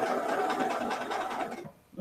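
Electric domestic sewing machine running steadily as it stitches pieced quilt fabric, then stopping about a second and a half in.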